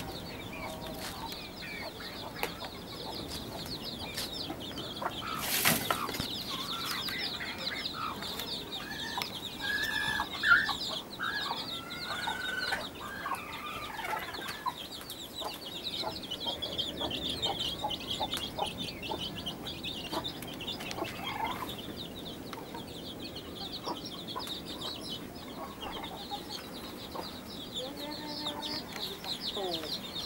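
Chickens clucking, over a steady, rapid high-pitched chirping. There is one sharp knock about five and a half seconds in.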